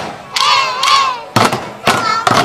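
Young children shout together in one long, wavering call, then two sharp strikes on upturned plastic bucket drums follow near the end.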